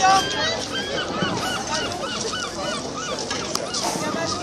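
A gull calling a run of about ten quick, rising-and-falling notes, some four a second, over the chatter of a crowd.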